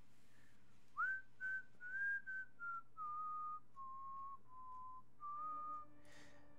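A person whistling a slow tune: a run of held notes that step down in pitch, then one higher note near the end.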